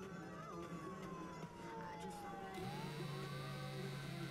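Faint distant siren wailing, its pitch falling slowly and then rising again. A low steady hum comes in a little past halfway.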